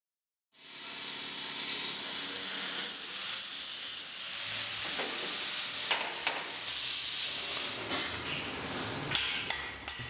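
Steady hissing noise that starts about half a second in, with a few sharp clicks in its second half.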